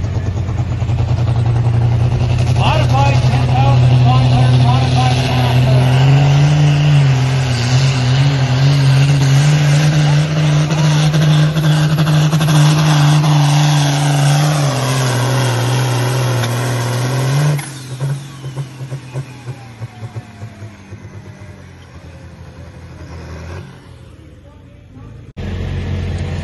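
A 10,500 lb modified farm tractor's diesel engine running at full power as it pulls a weight-transfer sled: a loud, steady drone that steps up in pitch about six seconds in. About two-thirds of the way through it drops away suddenly, leaving quieter, uneven engine sound.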